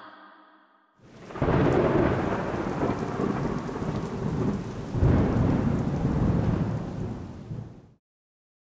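Thunderstorm: steady rain with a roll of thunder starting about a second in and a second, louder roll about five seconds in, fading out near the end.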